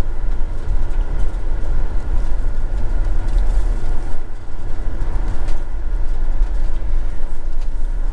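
Motorhome engine and road noise heard from inside the cab while driving, a steady low rumble.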